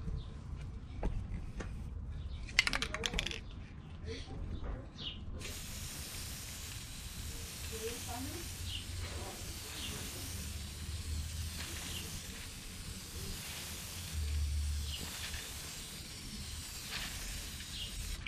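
Aerosol tint spray can hissing steadily as it sprays a coat of tint onto a masked tail light, starting suddenly about five seconds in.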